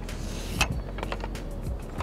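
Long-reach pole pruner cutting a walnut branch, one sharp click a little over half a second in, over soft background music.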